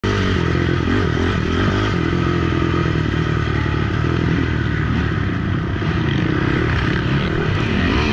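ATV (quad) engine running steadily under way on a dirt trail, its pitch wavering slightly with the throttle.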